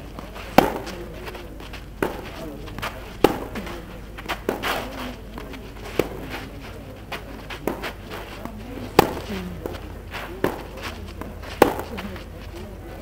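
Tennis racquets striking the ball in a baseline rally: sharp pops about every one and a half seconds, the near player's strokes louder than the far player's.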